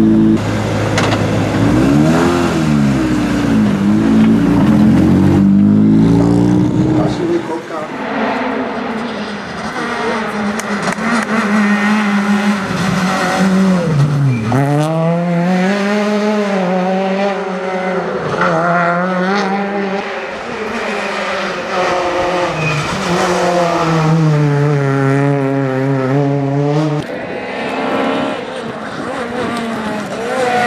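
Peugeot 208 rally car engine, first idling with a few blips of the throttle, then from about seven seconds in driven hard on a stage: revs climb through the gears and drop at each shift, with one deep drop about halfway for braking into a corner.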